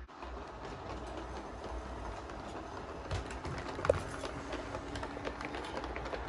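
LGB G scale steeple cab electric locomotive running on the track, its small motor humming and its wheels rolling with irregular clicking over the rails. There is a brief squeak about four seconds in.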